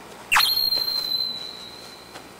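An edited-in sound effect: a quick upward sweep, then a high, steady ringing tone that fades out over about a second and a half.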